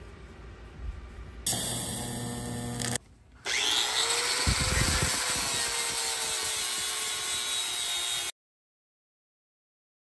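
Handheld angle grinder grinding a small metal part held in clamped locking pliers: loud, steady grinding for about five seconds that cuts off suddenly. About a second and a half in, a shorter run of loud machine noise with a steady hum comes first, broken by a brief pause.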